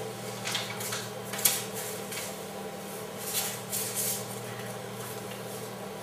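Steady low electrical hum with a few faint, scattered clicks and light handling noise on top.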